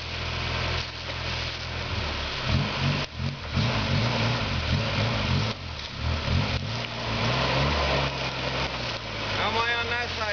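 Suzuki Samurai's four-cylinder engine working at low speed as the truck crawls up a steep rooty bank, the revs rising and falling through the middle of the climb.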